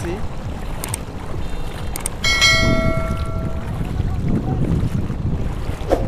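A subscribe-button sound effect: a couple of clicks, then a bright bell-like chime about two seconds in that rings for over a second. Underneath, a steady low rumble of wind on the microphone.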